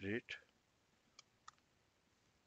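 Two computer keyboard keystrokes, short sharp clicks about a third of a second apart.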